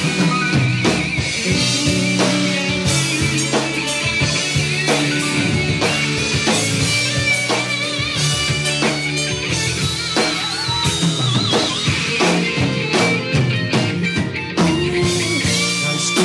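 Live rock band in an instrumental break: an electric guitar lead with held, wavering high notes over a steady drum kit beat.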